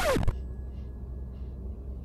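A person sniffing a piece of fried fish held to the nose, faint and soft, twice, over the steady low hum of a car's cabin.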